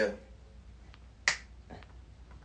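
A single sharp finger snap about a second and a quarter in, one of an evenly spaced series, with a couple of faint ticks around it. A man says a short "yeah" at the very start.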